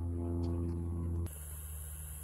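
A steady low mechanical drone with overtones that cuts off suddenly a little over a second in, leaving a fainter steady hum.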